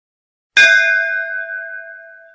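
A single brass temple bell struck once about half a second in, ringing on several steady pitches and fading slowly.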